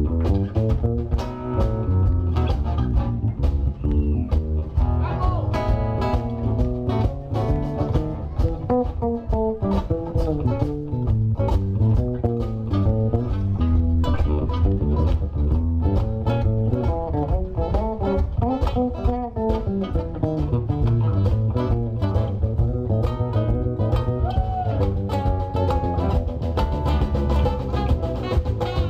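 Live blues band playing an instrumental passage: an electric guitar lead with bent notes over bass guitar and drums.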